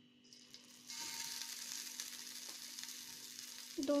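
Steamed chicken pieces lowered into hot oil in a pan for shallow frying. A faint hiss starts just after the beginning and grows to a steady sizzle about a second in.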